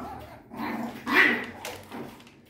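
Seven-week-old Lhasa Apso puppies play-fighting: a short burst of puppy growling and yapping starting about half a second in.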